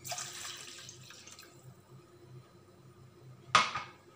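Milk poured from a glass into a stainless steel saucepan: a splashing pour that fades out over the first second and a half. A short, sharp knock comes near the end.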